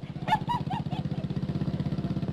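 Small motorbike engine running past at a rapid, even putter.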